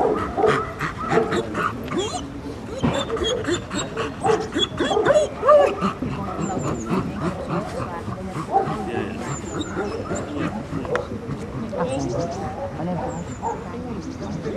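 Dog barking and yipping in quick succession, densest in the first half and sparser later, with people talking in the background.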